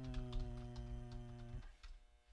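Typing on a computer keyboard, a run of quick key clicks, under a man's drawn-out steady "uhh" that lasts about a second and a half.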